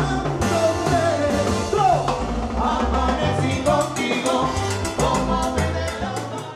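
Live salsa orchestra playing: piano, bass, congas and timbales, with trombones and baritone sax and a male lead singer.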